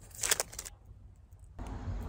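Brief crinkling and crackling as a small clear plastic item is handled between the fingers, then quiet. A low rumble comes in near the end.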